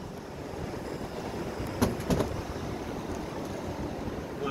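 Open-sided shuttle buggy riding along a paved street: a steady rumble of tyres and motion, with two or three short sharp knocks about two seconds in.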